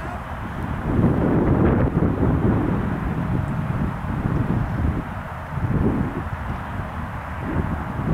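Low, uneven rumble of wind buffeting the microphone, swelling about a second in and again near the end.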